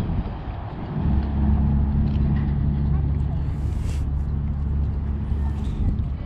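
A steady low engine hum that grows louder about a second in and falls away just before the end, with a short hiss about two-thirds of the way through.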